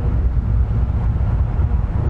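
Wind buffeting the microphone: a steady low rumble with no other distinct sound.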